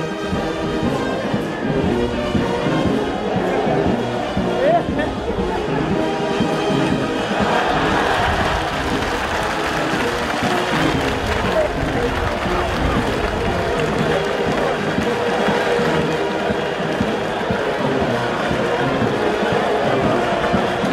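Brass band playing marching music over a crowd, with crowd noise and cheering growing louder about seven seconds in.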